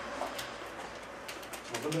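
A quiet pause in a meeting room with a few light clicks, like paper and pen handling on a table. A man begins to speak near the end.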